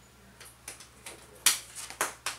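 A run of sharp, uneven clicks and taps, about five of them, the loudest about one and a half seconds in.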